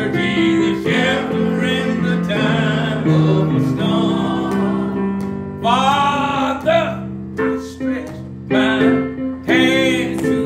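An elderly man singing an old-school gospel song into a microphone over steady instrumental backing. His voice wavers on long held notes about six seconds in and again near the end.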